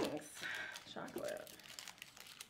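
A woman's voice, a laugh tailing off in a rising glide and then a short hum, with small crinkling and rustling noises while she eats ice cream from a spoon.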